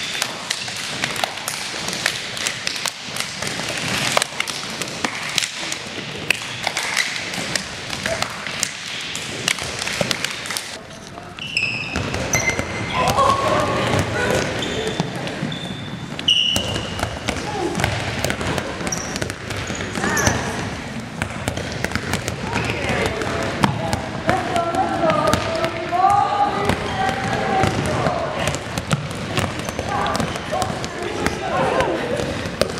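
Many handballs bouncing on a hardwood gym floor and being caught, a dense, irregular patter of thuds. About twelve seconds in, players' chatter joins the bouncing.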